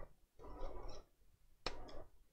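Clicks and rattles from a laptop's metal heat sink being handled and set back onto the motherboard, in two short bursts: one about half a second in, the other near the end.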